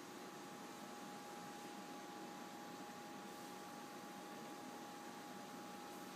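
Faint steady hiss with a thin, steady whine: an experimental porous-compensated ISO 5.5 air-bearing spindle running on compressed air.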